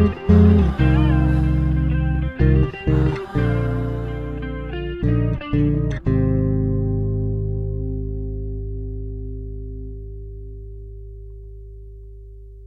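Sire V7 Marcus Miller four-string electric bass played fingerstyle over a rock backing track, in short hits with brief stops between them. About six seconds in, a last chord is struck and left to ring, fading slowly as the song ends.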